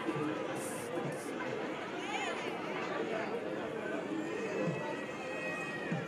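Indistinct chatter of several people's voices, with a faint thin high tone running through the second half.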